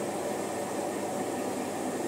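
Steady background hiss and hum with no distinct events.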